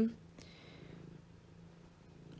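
A narrator's voice cutting off at the start, then a pause holding only a faint steady low hum and background noise.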